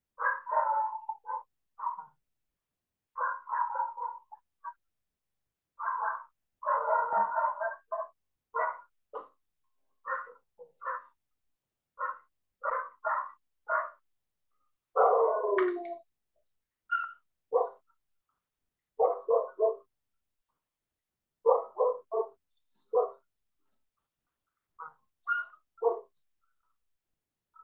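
Dog barking over and over in short clusters of several barks each, with brief pauses between the clusters.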